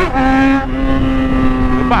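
Yamaha XJ6 motorcycle's inline-four engine and exhaust running under way, its note jumping and dropping briefly right at the start, then holding steady.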